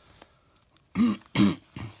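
A man coughing twice in quick succession, two short loud coughs about a second in, close to the microphone.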